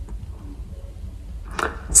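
A pause between spoken words: a low steady hum of background room tone, with a short hiss of breath about one and a half seconds in.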